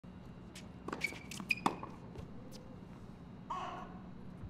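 Several sharp tennis-ball knocks on a hard court and racket, clustered about a second in, some with a short ringing ping. A brief voice follows near the end.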